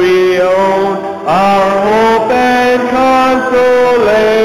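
A church congregation singing a slow hymn on long, held notes, with a short break between phrases about a second in.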